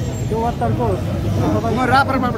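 A man speaking animatedly, with steady street traffic noise underneath.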